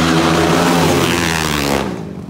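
Flat-track racing motorcycles running hard around the dirt oval, their engines loud and steady, then dropping off sharply near the end.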